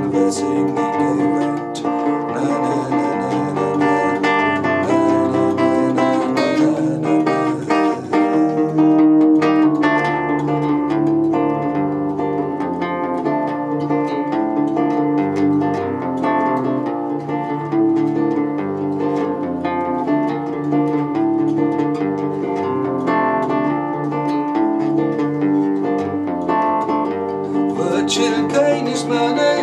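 Nylon-string acoustic-electric guitar played solo: an instrumental passage of plucked notes and chords between sung verses.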